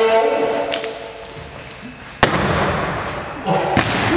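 People calling out, then a single sharp thump about two seconds in, followed by a rustling noise and a smaller click near the end.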